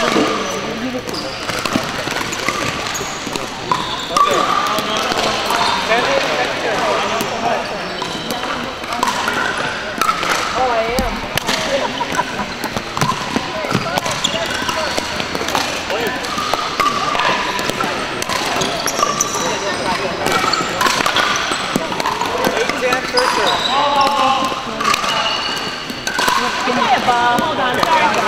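Pickleball rally: repeated sharp pops of paddles striking the plastic ball and the ball bouncing on a hardwood floor in a large gym, over a steady background of people's voices.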